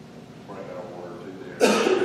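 Faint murmured voices, then a sudden loud cough about one and a half seconds in.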